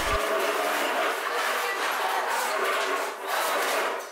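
Indistinct hubbub of a classroom full of students: many voices murmuring at once with no clear words, at a steady moderate level.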